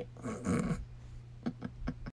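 A person clearing their throat, a short rough vocal rasp in the first second, followed near the end by a few light clicks of fingers handling the phone.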